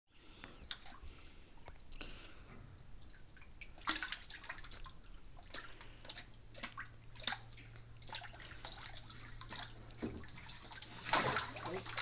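Water sloshing and splashing in short irregular bursts as a juvenile tomistoma (false gharial) swims through a shallow pool, busiest near the end. A steady low hum comes in about halfway.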